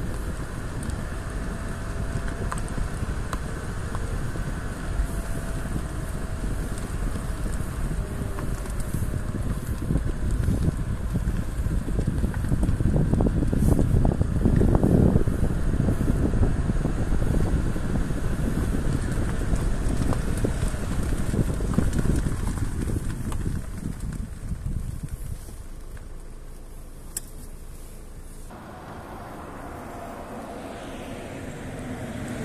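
Car driving along a road, a steady rush of engine, tyre and wind noise. It grows to its loudest about halfway through and falls quieter over the last few seconds.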